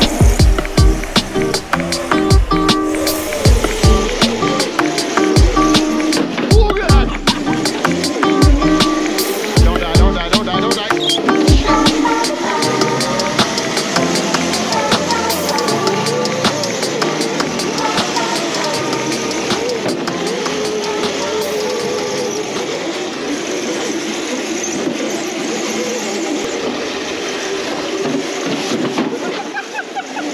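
Music with a thumping beat over electric drift karts, Crazy Carts, whirring and sliding on their small hard wheels across a concrete floor. The beat drops out about halfway, leaving the karts' rolling and skidding with voices.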